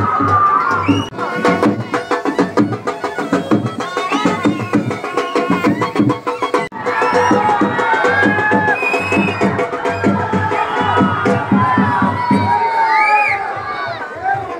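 Fast, dense drumming from a street procession's drum band, with a crowd shouting and cheering over it. The sound drops out for an instant about halfway through.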